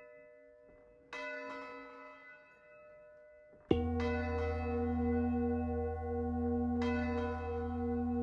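Bells ringing. A struck bell fades, another is struck about a second in, then about four seconds in a much louder, deeper bell tone comes in and holds with a slow wavering beat. A further strike follows about three seconds later.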